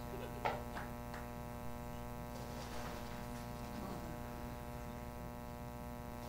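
Steady electrical mains hum from the sound system, with a knock from equipment being handled about half a second in and two fainter clicks just after.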